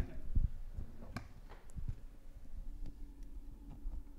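Faint scattered knocks and clicks of handling noise as a mostly plastic costume helmet is picked up, over a low room rumble.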